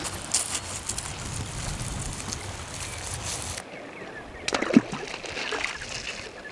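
River water rippling and lapping, over a low rumble. The sound drops quieter partway through, and a brief sharp sound with a falling tone comes near the end.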